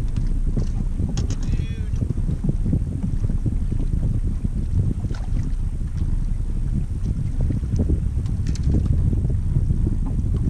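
Wind buffeting the microphone in a steady, gusting low rumble, with a few faint clicks and a brief high chirping sound about a second and a half in.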